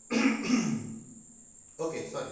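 A man clearing his throat into his fist: one loud rasping burst at the start and a shorter one near the end.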